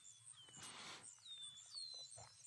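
Faint birdsong: short high whistled calls, each falling in pitch, about three of them.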